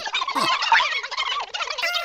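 A crowd of cartoon ants chattering all at once in gabbling, gobble-like gibberish voices, with a short held note near the end.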